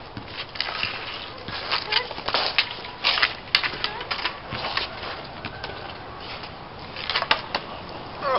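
Street hockey sticks clacking and scraping on a concrete driveway during a scramble in front of the net: a rapid, irregular run of sharp knocks, thickest in the middle and again near the end.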